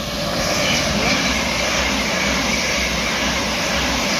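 Electric passenger train passing through the station at speed on the near track: a loud, steady rush of wheels on rails with a low rumble, building in the first half second.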